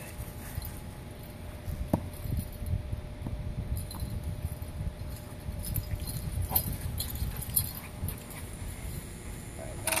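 Dogs running across a grass lawn after a thrown ball: a few light clicks and taps scattered over a steady low rumble.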